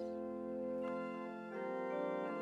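Organ holding a sustained chord, then moving to a new chord about one and a half seconds in: the interlude between verses of a congregational hymn.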